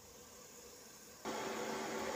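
Very quiet at first, then about a second in a steady hiss with a faint low hum starts abruptly and holds steady.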